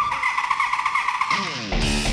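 Rock theme music with electric guitar, mixed with a motorbike engine revving high, its pitch falling from about halfway through.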